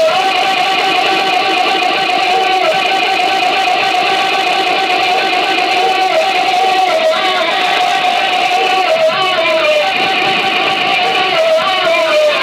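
Loud, distorted live noise music: a sustained droning tone holding one pitch with a dense buzz of overtones, bending briefly now and then.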